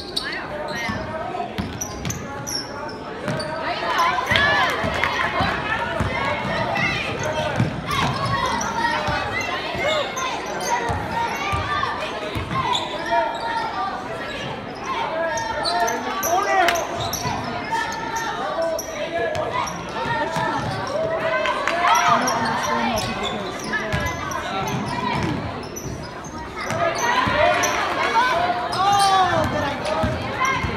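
Basketball dribbled on a hardwood gym floor during play, with repeated bounces, sneaker squeaks and voices calling out across the court.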